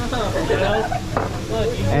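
Food sizzling steadily on a hot hibachi flat-top griddle, with people talking over it.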